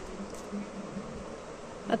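A finger-pump sunscreen spray bottle gives one faint, brief squirt about a third of a second in, over a steady low background hum.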